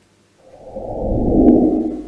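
A heavy breath or sigh blown onto a close microphone: a rush of air that swells for about a second and fades again.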